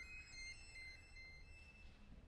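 The last violin note dying away into near silence, its faint ringing fading out within about a second and a half over a low room rumble.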